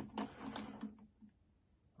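A few faint clicks and taps of steel lock picks and tensioners being handled against a lock, then near silence.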